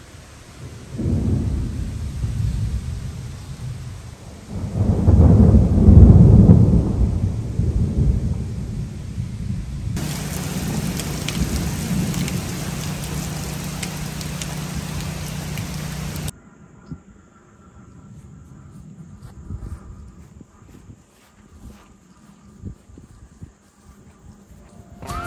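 Thunder rolling over steady rain: one roll about a second in and a louder, longer one around five seconds in. Steady rain hiss follows and cuts off abruptly past the middle.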